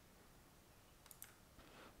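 Near silence: room tone with a few faint computer clicks a little over a second in, as the code is run.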